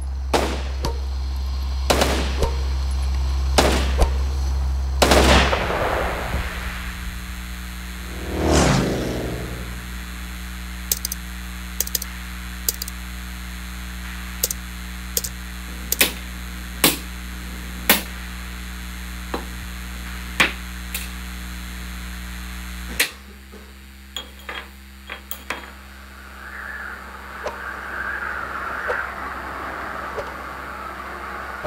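A film soundtrack of sound effects played in a screening room: a run of sharp cracks and clicks over a low steady hum, with one whoosh about eight seconds in. The hum cuts off suddenly about three-quarters of the way through, leaving fainter clicks.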